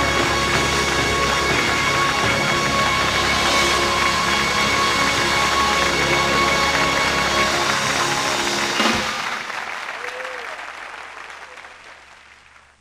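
Audience applauding over music; about nine seconds in the music's low end stops and the sound fades away.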